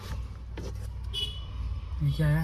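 Low, steady rumble of an idling vehicle engine, with a brief high tone about a second in.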